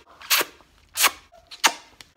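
A person blowing kisses: three sharp lip-smacking kiss sounds, about two-thirds of a second apart.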